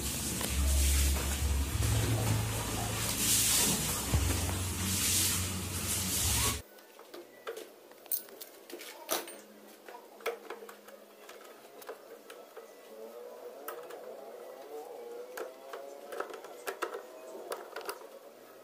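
Loud rumbling, hissy handling noise that cuts off suddenly about six and a half seconds in. After it come quiet metallic clicks, with small scraping squeaks near the end, as the wire connections on the bus bars of a chrome-stripping tank are handled and a bolt clamp is tightened with a nut driver.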